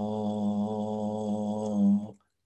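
A man's voice holding one long, low 'uh' vowel at a steady pitch, with the tongue drawn back halfway toward the uvula without touching it: a demonstration of the voiced uvular approximant, the soft French R. It cuts off near the end.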